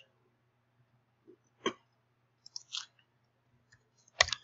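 Computer keyboard and mouse clicks: a single sharp click, then about a second later a quick run of key presses as a short word is typed.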